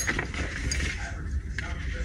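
A paperback picture book being handled and turned in the hands: uneven paper rustling and scraping, over a low steady hum.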